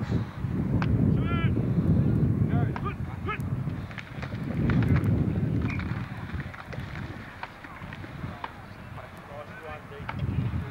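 Wind buffeting the camcorder microphone in gusts, easing after about six seconds. American football players give short shouted calls about a second in and again about three seconds in, with a few short knocks scattered through.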